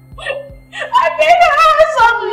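Speech: a raised, high-pitched voice in argument, over quiet background music.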